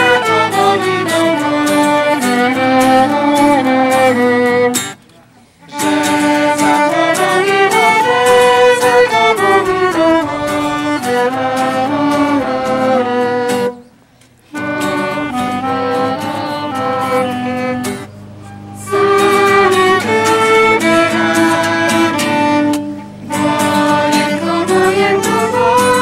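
A group of young voices singing a Polish military song, accompanied by violin and clarinet. The music stops briefly between verses, about five seconds in and again about fourteen seconds in.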